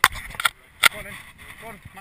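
Three sharp clicks or knocks from the mountain bike and riding kit being handled, the loudest just under a second in, with bits of riders' voices talking.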